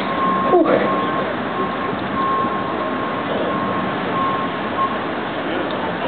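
Steady outdoor background noise, with a faint high beep sounding on and off roughly once a second and a brief voice just after the start.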